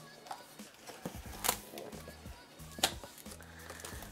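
Cardboard box flaps being pulled open by hand, with two short, sharp crackles of cardboard, over soft background music.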